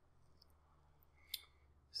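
Near silence: room tone with a low hum, broken by a single short click a little past the middle.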